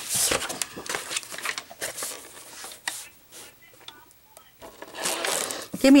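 Sheets of paper and cardstock being handled and slid across a tabletop, with irregular rustling and scraping that dies down in the middle and picks up again near the end.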